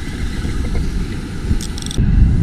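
Wind rumbling on the microphone over the sound of the surf. A short run of quick, light ticks comes near the end.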